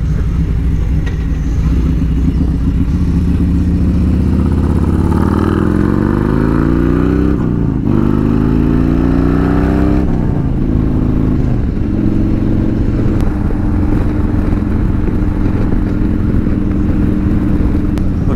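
Harley-Davidson Road Glide Special's V-twin, through a 2-into-1 aftermarket exhaust, pulling up through the gears. The engine note rises, drops at an upshift about halfway through, rises again, drops once more, then settles into a steady cruise for the last few seconds.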